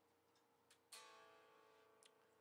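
Electric guitar plucked once about a second in, the strings ringing and slowly dying away; faint.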